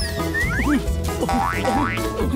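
Background music over a steady low drone, with quick sliding pitch sweeps, mostly upward, several to the second, as cartoon 'boing' effects.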